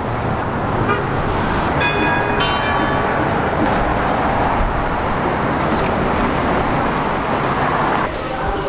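Busy city street traffic: a steady wash of passing cars and buses, with a vehicle horn honking for about a second, about two seconds in.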